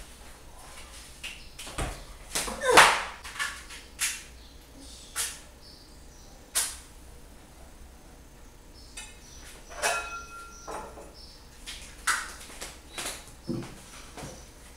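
Scattered knocks and clinks of pots and pans being handled at a kitchen stove, with footsteps. The loudest knock comes about three seconds in, and a brief ringing tone sounds about ten seconds in.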